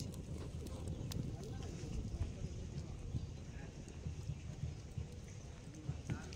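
Open wood fire crackling, with a few sharp pops over a steady low rumble.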